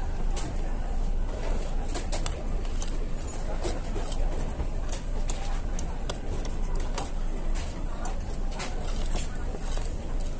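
Busy restaurant dining room: frequent light clinks of metal cutlery on ceramic plates over steady background chatter and a low hum.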